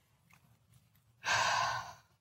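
A woman's single loud breath close to the microphone, a little over halfway in, lasting under a second after a near-silent pause.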